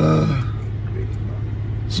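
A short vocal sound with falling pitch at the very start, then a steady low hum with faint background noise.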